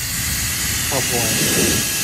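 Bio Ionic Smart X Pro hair dryer running, a loud steady rush of air.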